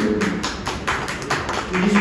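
A rapid, even run of sharp taps, about six a second, that stops shortly before the end.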